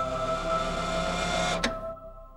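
Choir holding a sustained chord in a choral closing theme, with a steady hiss mixed in. The hiss stops with a sharp click about one and a half seconds in, and the sound then fades down.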